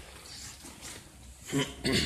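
A man's short vocal sounds near the end: a quick "oh" followed at once by a second brief grunt-like utterance, over faint room noise.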